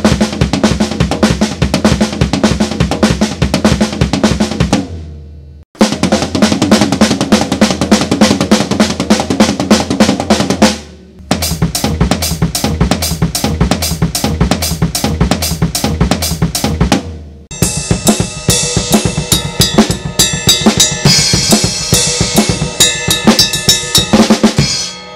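Acoustic drum kit played fast: linear crossed-hand fills of single strokes moving between snare drum, floor tom and hi-hat, with bass drum kicks, in three separate runs with short breaks between them. In the last six seconds a denser drum passage follows, with cymbals ringing over it.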